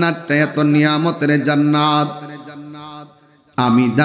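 A man's voice intoning the sermon in a sung, chant-like melody, holding long steady notes. It breaks off briefly near the end, then starts again.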